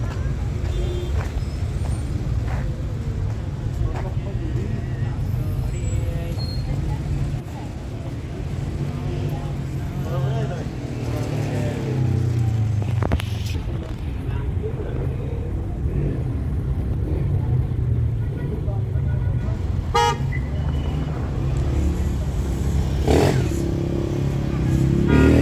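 Busy city street: a steady traffic rumble from passing cars and motorcycles, car horns tooting now and then, and the voices of passers-by.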